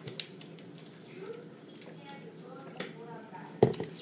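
Small handling clicks at a table, then a single sharp knock near the end as a plastic juice bottle is set back down on the tabletop. Faint murmured voices run underneath.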